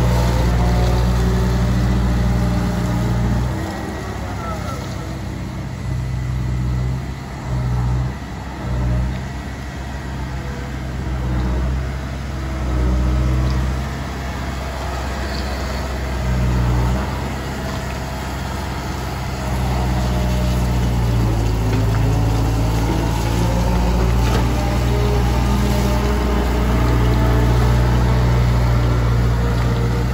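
Diesel engine of a Liebherr A924C Litronic wheeled material handler running as the machine drives and turns. The engine note swells and eases, louder at the start and again in the last ten seconds. Above it a fainter whine slides up and down in pitch.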